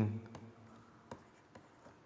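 Faint taps and scratches of a pen writing handwritten text, a few light clicks at irregular intervals.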